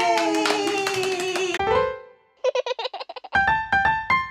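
Voices holding a long, slowly falling "yay" over hand claps, cut off about a second and a half in. After a short gap comes a logo jingle: a quick trill, then a few bright electric-piano notes.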